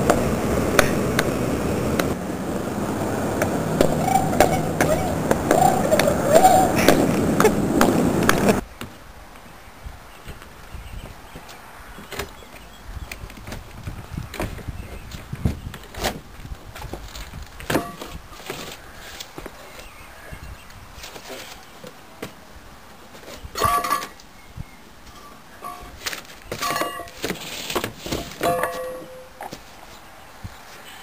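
Loud singing that stops abruptly about nine seconds in. After that, quiet outdoor sound with scattered knocks and a few short vocal sounds.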